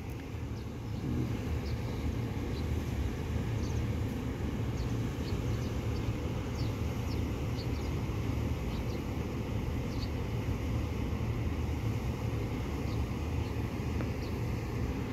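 Steady low rumble of vehicle traffic, with faint short high chirps scattered through it.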